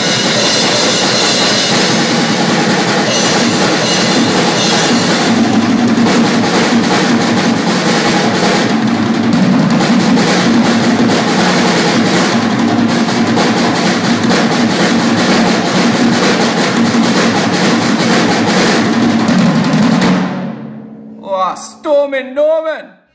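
An acoustic drum kit played in a dense run of snare, tom and cymbal hits, with cymbal wash over it all. The playing stops about twenty seconds in and the kit rings out, and then a man's voice briefly comes in.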